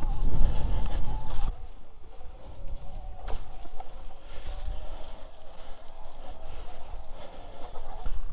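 Electric trail bike's motor whining steadily while riding. The whine drops in pitch about a second and a half in and then wavers, over a low rumble of wind and tyre noise that eases off at the same moment.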